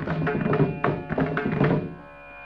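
Carnatic concert accompaniment in raga Hindolam: a quick, irregular run of drum strokes, deep thuds and sharp slaps typical of the mridangam, over a steady drone, while the vocal line pauses.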